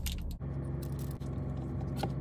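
A bite into a foil-wrapped protein bar, with a few short crinkles of the wrapper at the start, then chewing over a steady low hum in the car cabin.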